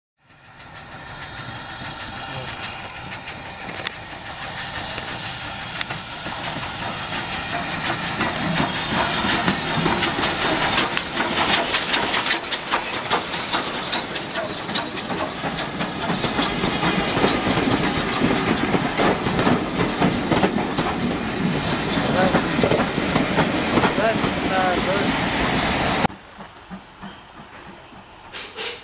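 BR Standard Class 4 2-6-4T steam tank locomotive, with its coaches, approaching and running past close by, growing louder as it nears, with many sharp clicks from the wheels and train. The sound drops off suddenly near the end.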